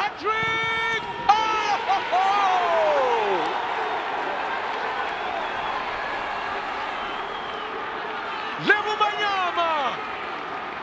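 A football commentator's excited, drawn-out shouts greeting a goal: long held notes in the first two seconds, then one long call falling in pitch, and another falling shout near the end, over a steady noisy background.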